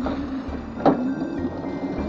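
Razor Crazy Cart XL electric drift kart rolling along on asphalt, its motor giving a steady hum, with one short sharp sound a little under a second in.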